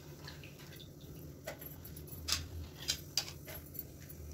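Soaked lentils being added into a stainless-steel mixer-grinder jar: a few light clicks and taps against the steel, about five in the last two and a half seconds.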